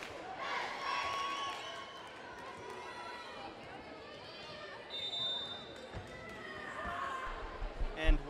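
Indoor gym crowd chatter echoing in a large hall, with a brief high referee's whistle about five seconds in and a few volleyball bounces on the hardwood floor near the end.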